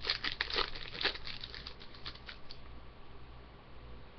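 A hockey card pack's wrapper crinkling and tearing as it is opened by hand: a rapid run of crackles for about the first two and a half seconds, then much quieter.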